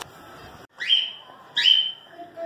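A caged bird calling twice, each call a short whistled note that rises and then holds steady, about a second in and again near the end.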